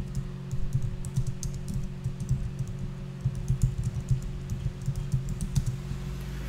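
Typing on a computer keyboard: a run of quick, uneven keystrokes over a steady low hum.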